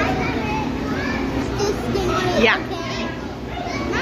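Children's voices and chatter from a crowd of visitors, with one high voice sliding sharply down in pitch about two and a half seconds in.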